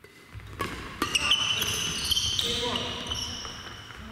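Badminton play in a gymnasium: two sharp racket strikes on the shuttlecock about half a second apart early on, followed by high squeaks of court shoes on the wooden floor in an echoing hall.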